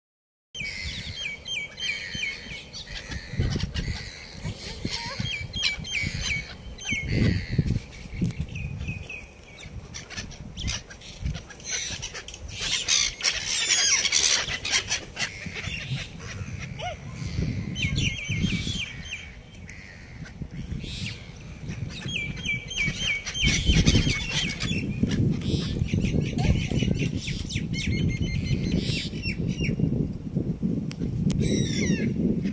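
A flock of gulls calling repeatedly in short harsh series, with gusts of low rumbling noise on the microphone, loudest near the end.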